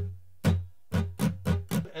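Acoustic guitar strummed in a down, down, down-up, down-up pattern: one strum, a short pause, then four quick strums about a quarter second apart, with the chord ringing on between them.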